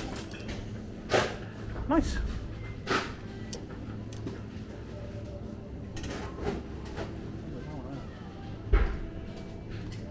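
Plastic drink bottles knocking and rattling in a wire shopping trolley as it is pushed along, with a few sharp knocks and one heavier thump near the end.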